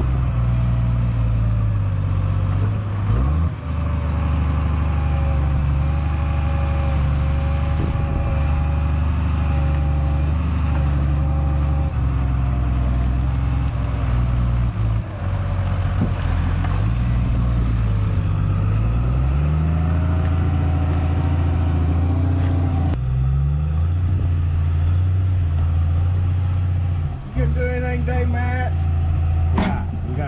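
Diesel engine of a grapple skidder running under load while it works logs, its pitch dipping and rising a few times as the throttle is worked. About three quarters of the way through the sound cuts abruptly to another steady engine drone.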